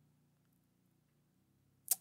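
Near silence: faint room tone, then near the end one brief, sharp breath-like sound from the speaker's mouth just before she speaks again.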